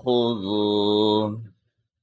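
A man reciting the Quran in a slow, melodic tajweed style, holding the single word "mā" as one drawn-out note for about a second and a half.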